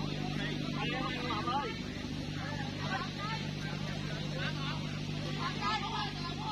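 Scattered chatter and calls from spectators and players around an outdoor dirt volleyball court, over a steady low hum.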